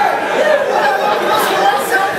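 Indistinct chatter: voices talking and laughing over one another, with no clear words.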